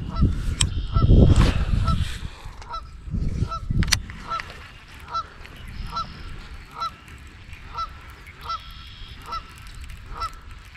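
Geese honking over and over, short calls about once or twice a second. A loud low rumble of noise on the microphone about a second in.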